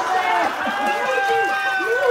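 A singer's voice through a microphone and PA holds one long, high, steady note, with other voices underneath.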